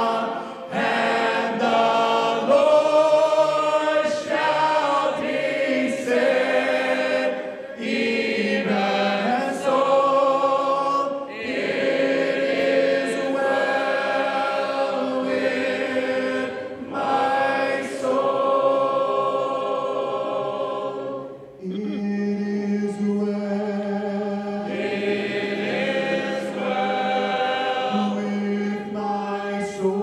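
Congregation singing a hymn a cappella, led by a song leader on a microphone, with sustained sung notes changing phrase by phrase.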